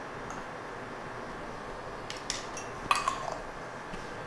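A few light clinks and knocks of bar tools and containers handled on a steel counter, grouped in the second half, the loudest just before three seconds in with a short ring.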